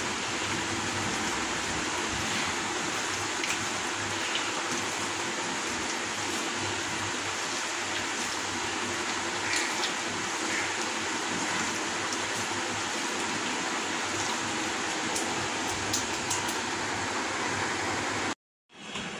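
A steady rushing hiss runs underneath a few faint clicks and squelches from hands working spiced raw chicken pieces around a steel bowl.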